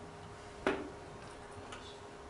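A single sharp click about two-thirds of a second in, over quiet room tone with a faint steady hum.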